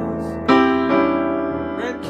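Bösendorfer grand piano playing a slow ballad accompaniment in sustained chords. A new chord is struck about half a second in, the loudest moment, and is left to ring and fade.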